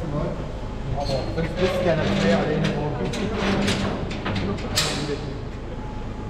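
Indistinct chatter of a small group over a low hum, with a few sharp metallic clanks and footsteps as people step into a steel mine shaft cage. The sharpest clank comes near the end.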